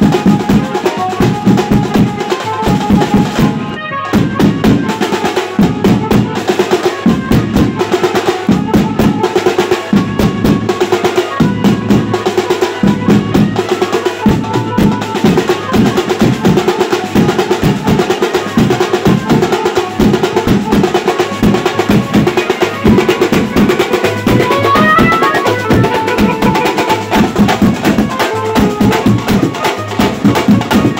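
A street drum band playing loud, fast rhythmic drumming together: side drums struck with sticks, a bass drum beaten with a mallet and large steel barrel drums. The playing dips briefly about four seconds in, then carries on.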